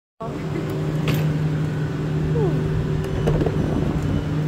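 Steady low hum of a passenger train standing at the platform with its doors open.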